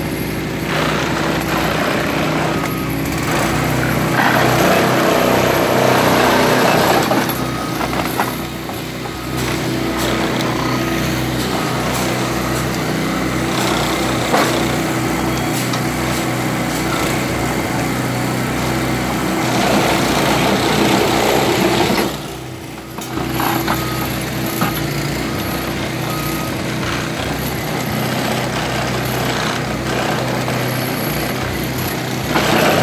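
A hydraulic railway ballast tamping unit working the ballast under the sleepers, over an engine running steadily throughout. The tamping comes in two louder, noisier stretches, about four to seven seconds in and again about twenty to twenty-two seconds in, and briefly quietens just after the second.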